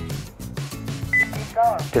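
A single short electronic beep about a second in, from a Honeywell Lyric security controller responding to a key fob press to disarm the alarm, over background music.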